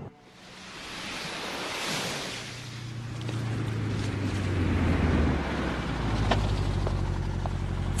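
Waves washing onto a beach, joined about two and a half seconds in by a car engine running with a low steady hum that grows louder.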